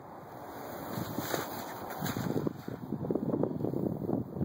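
Wind buffeting the microphone: a gusty, uneven rumble that grows louder about a second in.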